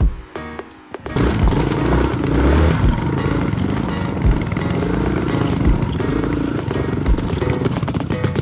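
Air-cooled single-cylinder trail-bike engine (Yamaha Serow 225) working at low speed over loose rock, its revs rising and falling as the rider picks a line, with scattered knocks and clatter from the bike over the stones. It comes in strongly about a second in, after a quieter moment.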